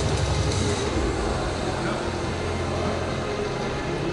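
Busy exhibition-hall background: a steady low hum with background music and faint voices underneath.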